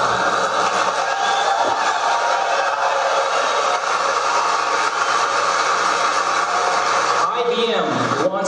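A large audience clapping and cheering, steady and loud, in a recorded keynote. Near the end it gives way to a man's voice speaking again.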